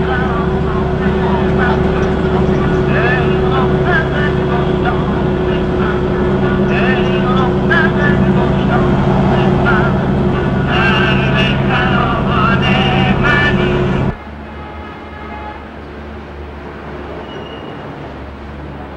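Bus engine running with a steady low hum, heard from inside the cabin, with passengers' voices under it. About fourteen seconds in it gives way abruptly to a quieter, even street background.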